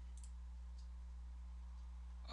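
A couple of faint computer mouse clicks over a steady low electrical hum.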